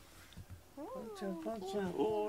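A domestic cat meowing: one long meow starting about a second in, rising and then falling in pitch, with a woman's voice alongside it.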